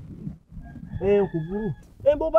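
A rooster crowing once, a single crow of about a second in the second half.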